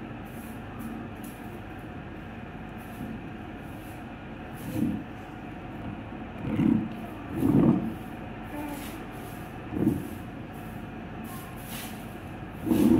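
Fingers rubbing and pinching strands of hair close to the microphone, making short scratchy rustles over a steady low background rumble. Four brief dull low bumps come in the second half.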